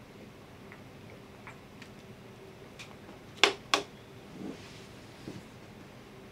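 Plastic drinking bottle being handled and set down: scattered light clicks and crackles, with two sharp clicks about three and a half seconds in, over a faint steady hum.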